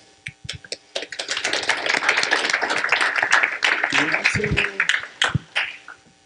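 Audience applauding: a few scattered claps at first, full applause from about a second in, dying away near the end.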